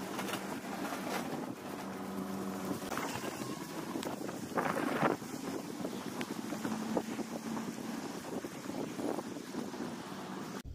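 Wind buffeting the microphone while walking outdoors, with a plastic carrier bag rustling and a louder rustle about five seconds in, over a faint steady hum.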